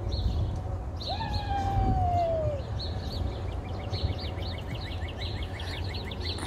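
Wild songbirds chirping in quick repeated series, with one long whistled note gliding down in pitch for about a second and a half, starting about a second in. A steady low wind rumble on the microphone runs underneath.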